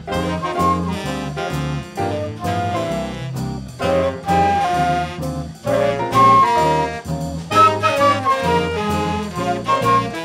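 Student jazz ensemble playing live: a melody line, likely horns, carries over a walking bass with drums and cymbals keeping time.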